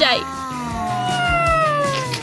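A woman's long, high 'mmm' while tasting food, its pitch falling slowly over about two seconds, with background music underneath.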